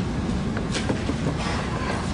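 Wooden tray of a Montessori geometric cabinet being handled and slid into its drawer, giving a few light wooden knocks. Under it runs a steady low rumble.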